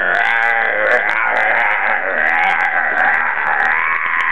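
A man's single long, rasping scream, held without a break in a mock-scary monster manner.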